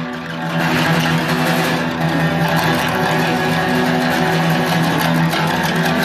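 Two acoustic guitars and an electric guitar playing together live: strummed chords in a steady instrumental passage.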